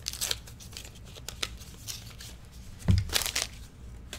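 Foil wrapper of a 1989 Upper Deck baseball card pack torn open and crinkled by hand, in irregular crackly bursts. A soft thump with more crinkling comes about three quarters of the way through.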